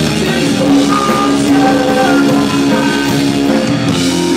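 Live rock band playing: electric guitars holding sustained notes over bass guitar and a drum kit with cymbals.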